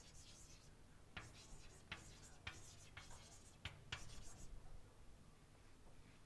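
Chalk writing on a blackboard: faint, sharp taps and scratchy strokes as letters are written, clustered between about one and four and a half seconds in.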